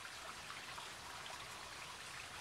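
Faint, steady hiss with no distinct events.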